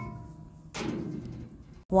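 A metal ladle clinking against a wok, its ring fading out, then a short rush of noise about a second in.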